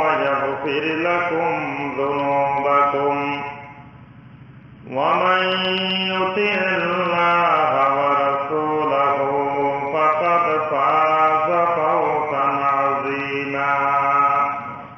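A man's voice chanting in slow, melodic, long-held phrases in the manner of Quran recitation (tilawat). It breaks off for about a second around four seconds in, then resumes.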